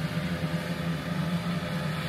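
A steady low mechanical hum with an even background noise, unchanging throughout.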